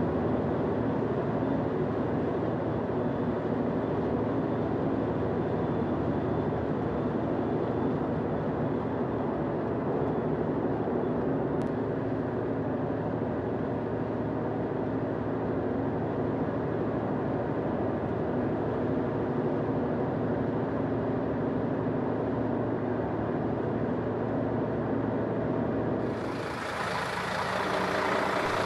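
Steady engine and tyre noise heard inside a car driving at motorway speed, a low, even hum with road noise. Near the end the sound changes and drops in level.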